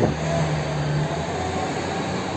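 City street traffic: road noise with a steady low engine hum that stops a little over a second in.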